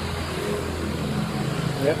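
A machine running with a steady low hum.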